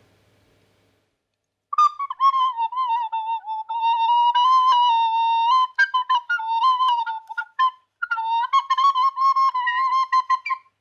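A recorder played after a short silence, starting about two seconds in: a single high, wavering line of notes that hovers around one pitch, with tongued breaks and a brief pause near the end. It is played as a snake-charmer style tune.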